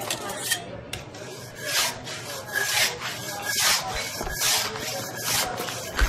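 Repeated rasping, rubbing strokes, about one a second.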